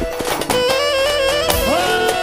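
Live wedding-band music: a clarinet plays an ornamented folk melody that slides up to a higher held note near the end, over a steady beat of about two pulses a second.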